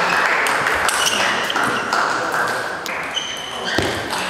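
Table tennis rally: a celluloid-type ball clicking sharply off the rackets and the table in turn, each click roughly a second apart, over a steady background hiss.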